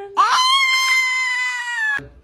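A long, high-pitched wailing cry that slides up and is then held for about a second and a half, dipping slightly at the end before it is cut off abruptly.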